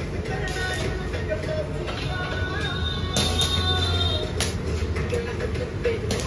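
Stick (arc) welding on a steel pipe: the electrode arc crackles and hisses steadily over a low hum from the transformer welding machine, with sharper crackles about three and four and a half seconds in. Music plays in the background.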